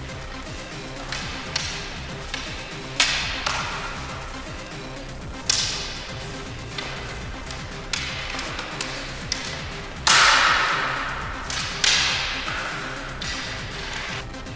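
Sword-and-buckler sparring: training swords clashing and striking bucklers in sharp clacks that ring briefly, about a dozen hits with the loudest about ten seconds in, over background music.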